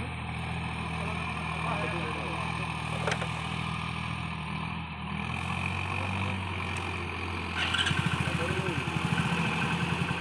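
Sonalika RX 47 4WD tractor's diesel engine working under load as it hauls a loaded trolley through mud. About three-quarters of the way through, the engine note gets louder with a stronger pulsing beat as the tractor climbs onto firmer ground.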